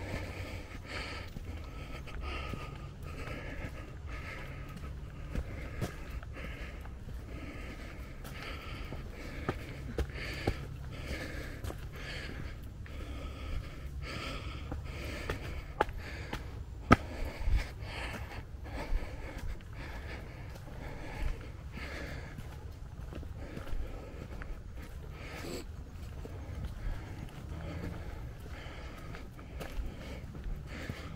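A hiker breathing hard in a steady rhythm while climbing a steep forest track, with footsteps on a dirt path covered in dry leaves and a low rumble of handling or wind on the microphone.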